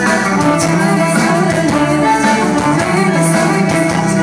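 Folk metal band playing live and loud: electric guitars and drum kit, with a male singer's vocals.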